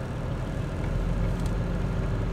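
Car engine idling, heard inside the cabin as a steady low rumble, with a faint click about one and a half seconds in.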